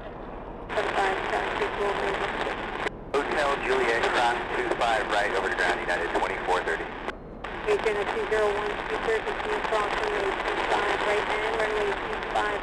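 Air traffic control radio chatter: voices over a radio feed with static hiss, cutting out abruptly twice, about three and seven seconds in, between transmissions.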